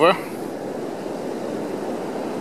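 Steady beach background noise of sea surf and wind, even and unbroken, with the end of a spoken word right at the start.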